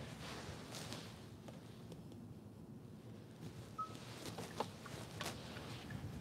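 Faint scattered clicks and one short electronic beep from the cabin of a 2023 Kia Sportage hybrid as its hazard lights are switched on.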